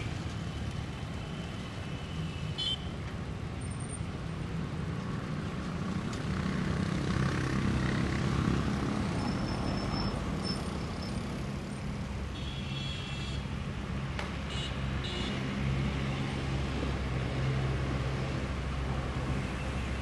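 Street traffic: engines of passing cars and trucks running steadily, swelling about seven to nine seconds in. A few short high-pitched tones cut in near the start and again around twelve to fifteen seconds.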